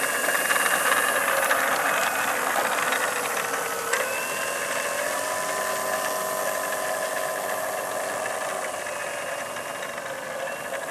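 Turnigy 4260 brushless electric motor and propeller of a model P-47 whining steadily at low throttle as the plane taxis on the ground. The pitch jumps briefly about four seconds in with a throttle change, then holds and eases down a little.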